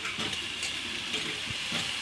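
Chopped potato, ridge gourd and long beans frying in a metal wok over a wood fire: a steady sizzling hiss, with a few light scrapes as a spatula stirs them.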